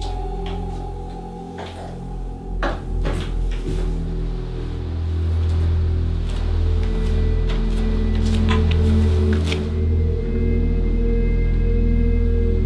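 Dark horror film score: a low, steady drone that swells after a few seconds. Over it come a few sharp knocks about three seconds in, like a door being opened, and lighter scattered clicks later.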